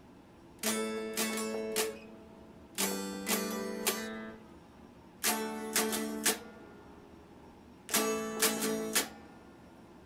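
Electric guitar played note by note: a short phrase of a few picked notes, played four times with short pauses between.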